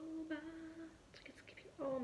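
A girl humming one held note for about a second, with a few faint ticks after it and her voice starting up again near the end.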